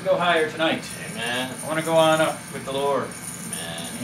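Men's voices talking off-mic in a small room, the words indistinct.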